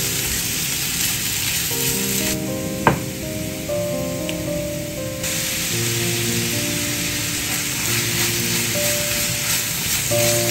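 Grated carrots sizzling in a frying pan as they are stirred with a silicone spatula, over soft background music. The sizzle drops away for about three seconds from just after two seconds in, with one sharp tap in that gap, then comes back.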